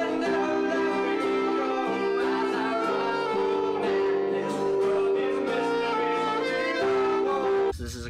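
Live saxophone playing long held notes over a strummed acoustic guitar, in a roomy amateur home recording. Near the end the music cuts off abruptly and a man's speaking voice begins.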